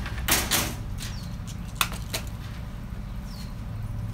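Stiff welded-wire mesh being handled against a wooden cage frame: a loud rattling scrape early on, then a sharp click and a softer one a moment later, over a low steady hum.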